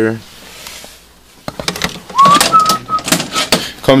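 Side panels of a Beckman Coulter ACT Diff hematology analyzer being opened and handled: a single click, then about two seconds in a quick run of sharp clicks and knocks. During the clicks comes a brief high squeak that rises and then holds.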